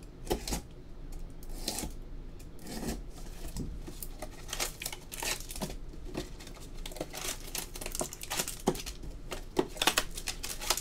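Plastic wrapping crinkling and tearing as boxes and packs of trading cards are opened by hand, in irregular rustles with small clicks and taps.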